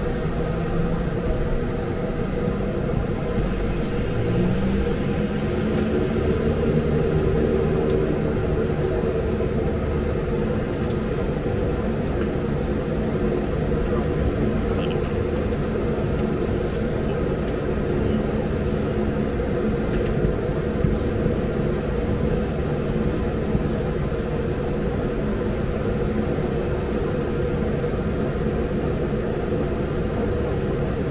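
Fokker 50 turboprop engine running at the stand, heard from the flight deck during engine start. It is a steady drone whose pitch rises about four seconds in and then holds.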